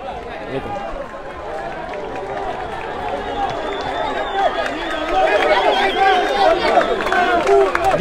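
Crowd of football fans talking and calling out at once, many voices overlapping, growing louder toward the end.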